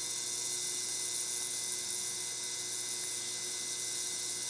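YX2000A ultrasonic cleaning bath running, a steady high hiss with a low hum under it from the cavitating soapy water, mid-cycle as dirt lifts off the parts.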